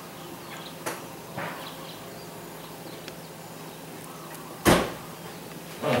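A single loud sharp thump about three-quarters of the way through, with a couple of faint knocks before it, over a low steady background.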